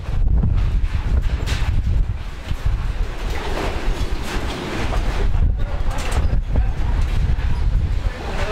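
Wind buffeting the microphone outdoors: a low, gusting rumble that rises and falls throughout, with a fainter rushing noise above it.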